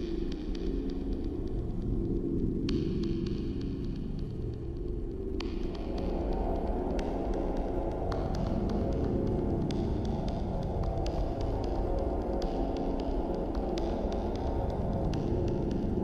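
A low, steady throbbing hum that fills out and reaches a little higher about five and a half seconds in.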